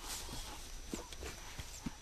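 A lion clambering in a tree: a few faint, scattered knocks and scrapes of its claws and feet on bark and branches.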